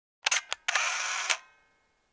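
Camera shutter sound effect: two quick clicks, then a noisy stretch of about half a second that ends in a louder click, like a shutter firing and the camera winding on.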